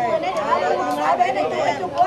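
Several people talking at once: overlapping, lively chatter from a group.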